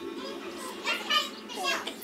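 A toddler's high-pitched voice, a few short utterances or babbling sounds, the loudest about a second in.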